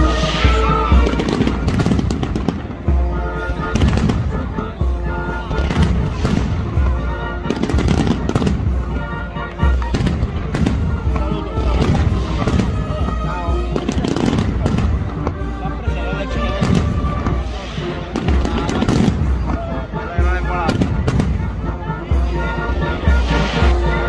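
Band music playing over a dense, continuous crackle and banging of firecrackers going off throughout.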